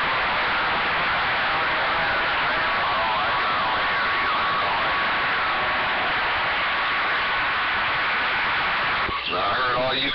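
Cobra 2000 CB base radio receiving distant stations: steady static hiss with faint, garbled voices breaking through and a thin steady whistle through the middle. About nine seconds in, a stronger station comes in and a clearer voice sounds from the speaker.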